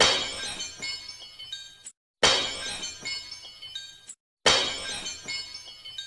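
Glass-shattering sound effect played three times in a row. Each play is a sudden crash of breaking glass followed by about two seconds of ringing, tinkling fragments, then cuts off abruptly before the next begins.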